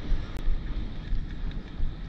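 Wind buffeting the camera's microphone: an uneven, gusting low rumble.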